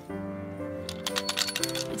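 Green plastic toy train caboose rattling and clinking as it is rolled back and forth, from about half a second in. It is meant to ring a bell, but it sounds like something's loose in there. Steady background music plays underneath.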